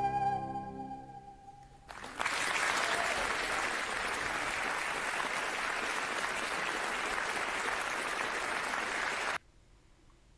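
A female singer's last held note with vibrato, over the orchestra, fades away in the first two seconds. A concert audience then applauds steadily for about seven seconds, and the applause cuts off abruptly near the end.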